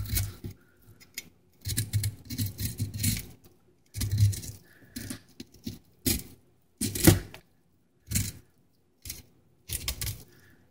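Large kitchen knife cutting through a northern pike's skin along its back, heard as a string of short scraping slices at irregular intervals, roughly one a second.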